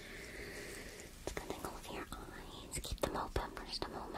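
Soft close-up whispering, joined from about a second in by a run of sharp, irregular clicks and taps of handling, the loudest of them near the end.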